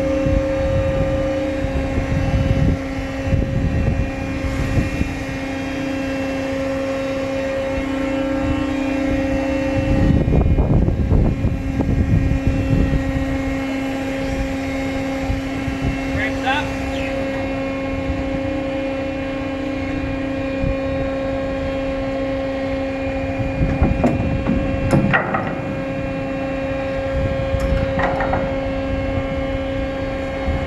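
A ship's deck machinery runs with a steady two-tone hum, its lower tone shifting slightly now and then, over gusty wind rumbling on the microphone.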